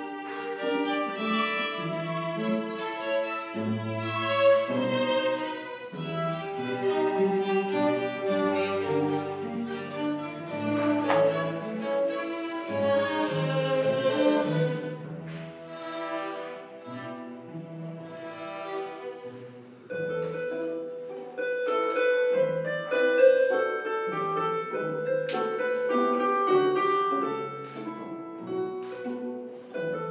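Chamber ensemble of two violins, viola, cello, flute and psaltery playing a slow pavane. The bowed strings carry the music, and in the second half the flute holds long notes over them, with a few plucked psaltery notes.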